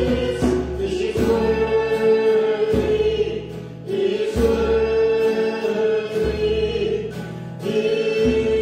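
Voices singing a slow worship song to strummed acoustic guitar. Long held notes come in phrases, with two short breaks between them.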